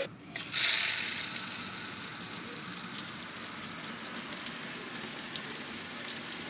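Outdoor shower running: water spraying onto a wooden slatted floor. It comes on suddenly about half a second in as a steady hiss and continues, easing slightly.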